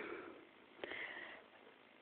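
Near silence with one short, faint sniff about a second in.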